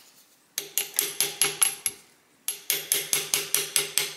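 Light, rapid hammer taps on a brass punch, driving the needle bar of a Singer 66 sewing machine down out of its clamp, at about six taps a second, each with a short metallic ring. There are two runs of tapping with a brief pause between them about two seconds in.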